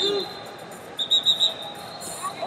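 Referee's whistle in a wrestling arena: a faint steady high whistle tone, then four quick, loud chirps about a second in.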